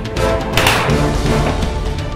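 Dramatic film score music with a single pistol shot about half a second in, its sound trailing off quickly.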